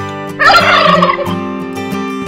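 A turkey gobble, one rapid warbling call about half a second in, lasting under a second, over acoustic guitar music.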